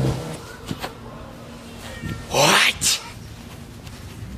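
A meow-like cry a little past halfway, its pitch bending up and down, followed at once by a brief second call.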